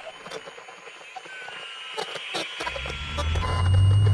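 Radio static with crackles and thin whistling tones that slide in pitch, like a radio being tuned. About two and a half seconds in, a deep low rumble starts and grows louder.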